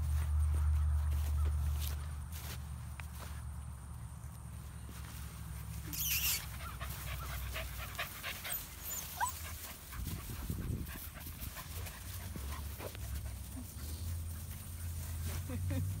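Young puppies playing, with small whines and yips scattered among the rustle of dry grass, and a sharp scuffle about six seconds in.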